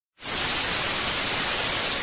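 Analogue TV static: a steady, even hiss of white noise that starts a moment in.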